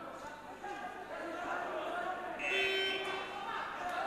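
Indistinct voices shouting and calling out at a fight, with one louder, drawn-out shout about two and a half seconds in.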